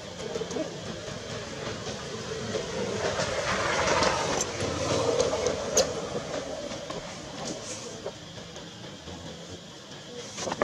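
A steady rushing rumble that swells around the middle and then fades, with a few faint clicks.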